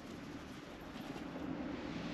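Faint, steady outdoor background noise: a low hum under an even hiss, growing slowly louder, with no distinct events.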